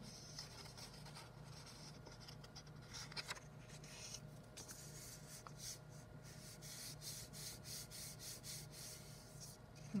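Hands rubbing and pressing over a folded sheet of paper to press glued paper pieces flat, a faint dry rubbing in a run of short repeated strokes.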